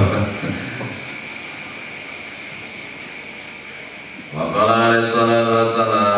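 Man's voice beginning a chanted Arabic recitation about four seconds in, in long held notes at a steady pitch. Before it, a few seconds of steady hiss with a faint high whine.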